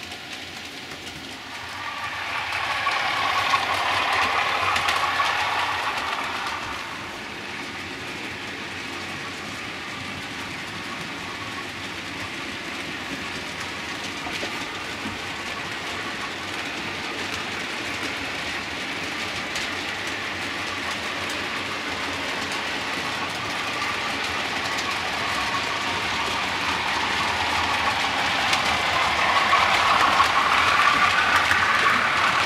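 Model railway trains running on the layout's track: one passes close, swelling and fading over a few seconds, then the running settles to a steady level and grows louder near the end as another train draws near.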